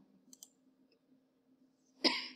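Two quick computer mouse clicks about a third of a second in, advancing a presentation slide; otherwise near silence with a faint steady hum.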